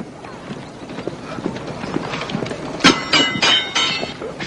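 Film battle soundtrack: horses' hooves beating irregularly, then from about three seconds in a quick run of five or six ringing metal clashes.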